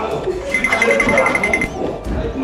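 Agitated voices and commotion in a room. A high electronic beeping tone runs from about half a second in until shortly before the end.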